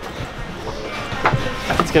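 Footsteps of people hurrying on foot, with a few knocks in the second half, over a steady outdoor background noise.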